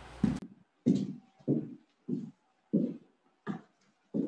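Footsteps on a hard floor at a steady walking pace, about three steps every two seconds.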